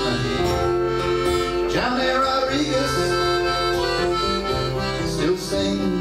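Piano accordion playing a melody of held notes over fingerpicked acoustic guitar, an instrumental fill in a country song.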